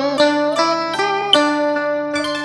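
Instrumental karaoke backing for a Vietnamese lý folk song: a plucked string instrument picks out the melody in quick notes, some of them bent or wavering.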